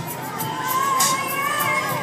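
A group of children singing a held, wavering melody over backing music with a regular beat, mixed with the voices of a large crowd of children.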